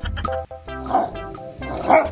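Background music with a steady melody, over a rottweiler giving two short vocal calls with its head raised, one about a second in and a louder one at the end.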